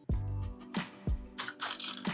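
Plastic Mini Brands capsule ball being pried open by hand: several sharp plastic clicks and cracks as its segments come apart, over soft background music.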